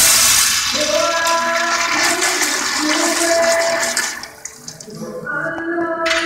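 Zurn commercial toilet flushing: a loud rush of water swirling through the bowl that fades after about four seconds. Background music with singing plays throughout.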